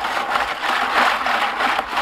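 Gold-stripping solution sloshing and churning in a plastic bucket as a stainless steel mesh strainer basket full of gold-plated circuit-board fingers and pins is agitated hard in it. The sound is a steady, even rush.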